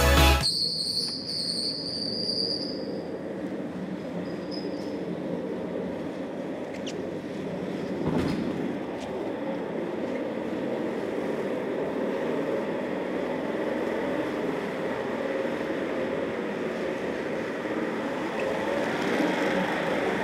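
Office-chair casters rolling steadily over a hard floor, a continuous grainy rumble. A brief high whistle sounds near the start and a single knock about eight seconds in.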